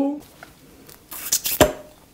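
Slipper lobster meat coming free of its shell with a brief, soft wet squish about a second in, followed by a single sharp knock.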